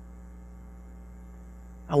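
Steady electrical mains hum with many even overtones, heard through a pause in speech; a man's voice starts right at the end.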